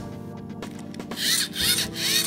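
LEGO plastic parts, a wheel and motor, rubbing and scraping in the hands, with two rasping rubs starting about a second in, over background music.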